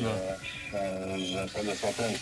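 Car stereo playing an FM radio station through the cabin speakers, turned up to volume 6: music with a singing voice.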